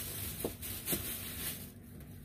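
A thin plastic shopping bag rustling and crinkling as hands dig into it and draw out a blister-carded toy car, with two light clicks about half a second and a second in.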